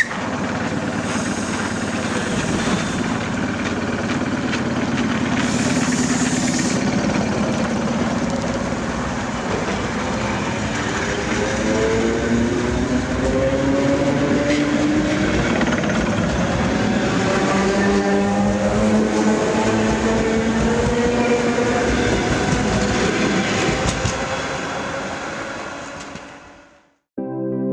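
ET2 DC electric multiple unit pulling away from a platform, its wheels rumbling over the rails and its traction drive whining, the whine climbing in pitch as the train gathers speed. Two short hisses come in the first seven seconds, and the sound fades out at the end.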